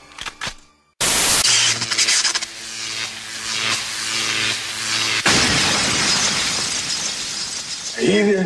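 Intro sound effects: a sudden loud crash about a second in, then a loud, noisy stretch with musical tones under it, and a second sharp hit about five seconds in.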